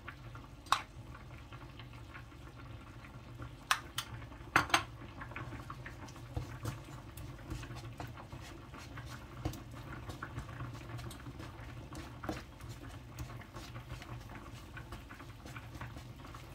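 Wooden spatula stirring and scraping red curry paste and coconut cream in a nonstick wok. There are a few sharp knocks against the pan in the first five seconds, then a run of small ticks and crackles as the paste fries, over a steady low hum.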